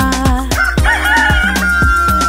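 A rooster crowing: one long crow starting about half a second in, rising and then held on a steady high note. It plays over children's-song backing music with a steady drum beat.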